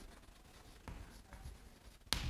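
Faint writing sounds in a small room: a couple of light strokes about a second in and again shortly after, otherwise near silence.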